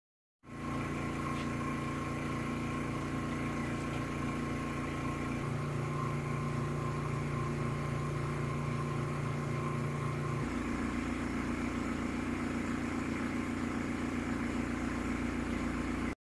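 A steady low mechanical hum with a regular pulse, like a motor running. Its tone shifts abruptly twice, about five and ten seconds in.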